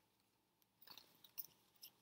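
Near silence, with a few faint rustles and clicks from the second half on as a bundle of embroidery threads is handled against a paper chart.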